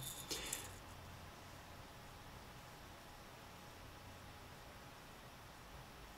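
Near silence: faint, steady room hiss, with a brief soft sound in the first second.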